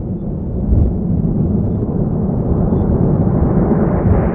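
Outro sound effect under the closing credits: a loud, deep, noisy rumble that swells gradually louder.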